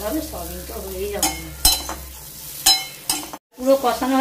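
Masoor dal lentils and onions frying in a kadai while a spatula stirs and scrapes them, with sizzling and a few sharp clicks of the spatula against the pan. The sound cuts out briefly just before the end.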